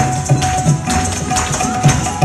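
Tap shoes striking the stage and the Kathak dancer's ankle bells (ghungroo) jingling in quick rhythmic strikes, over backing music with a held tone and bass notes.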